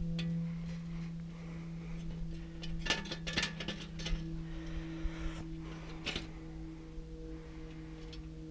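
A few light metallic clicks and rattles from a bicycle front wheel's axle and hub being handled, over a steady low hum.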